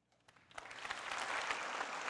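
Audience applause: a few scattered claps, swelling about half a second in to steady clapping from a full hall.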